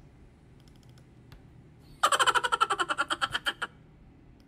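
A short sound-effect clip about halfway through: a rapid run of pitched, pulsing sound, about a dozen pulses a second, lasting under two seconds, over a low steady hum.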